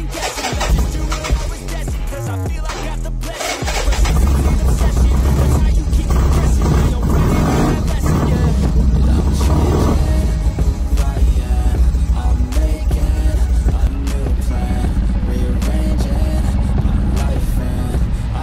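Background music throughout; about four seconds in, a 1979 Harley-Davidson Ironhead Sportster's V-twin engine starts and then runs steadily, loud beneath the music, through its 2-into-1 exhaust.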